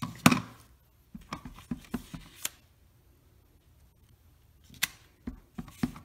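Hard plastic knocks and taps from a clear acrylic stamp block being pressed onto cardstock and set down on the craft table: one sharp knock at the start, a run of lighter taps, a quiet pause, then three more knocks near the end.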